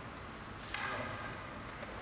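A single sharp clack of two wooden bokken striking together, about two-thirds of a second in, with a brief ring.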